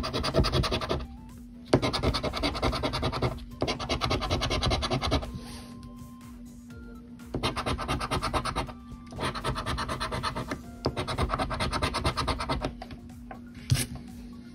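A metal scratcher coin scraping the latex coating off a scratch-off lottery ticket, in several bursts of quick back-and-forth strokes with short pauses between them and a quieter stretch of about two seconds in the middle.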